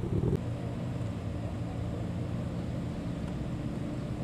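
Patrol car engine running with a steady low hum, after a brief louder rumble at the very start.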